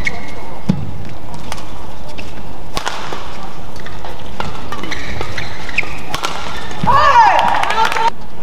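Badminton doubles rally: rackets strike the shuttlecock in a series of sharp hits, mixed with court-shoe squeaks over a steady hall background. A burst of high squealing sounds comes about seven seconds in, as the rally ends.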